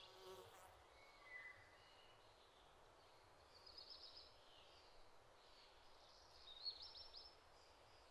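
Near silence with faint, scattered high bird chirps and short trills.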